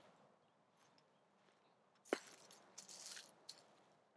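Near silence, broken by a faint sharp click about two seconds in and a brief, faint crunching about a second later.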